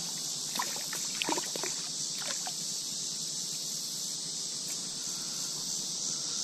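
A hooked smallmouth bass splashes a few times in shallow creek water in the first couple of seconds as it is grabbed and lifted out by hand. Under it runs a steady, high drone of summer insects.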